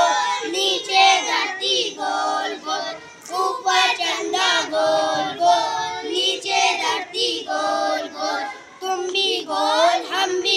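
A group of boys singing a children's action rhyme together, unaccompanied, in short repeated phrases with brief breaths between them.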